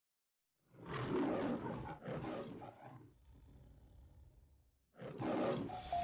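Lion roar sound effect in the style of the MGM film logo: a rough roar about a second in, a second roar right after, then a faint low growl. Another burst of noise comes in near the end as intro music begins.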